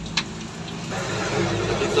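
A motor vehicle engine running on the road close by, a steady hum that gets louder from about a second in. There is a single metal clink of a spoon against the wok near the start.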